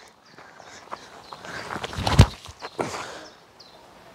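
Footsteps and rustling on a bark-chip slope as a small rock is thrown down into the gorge, with one sharp thud about two seconds in.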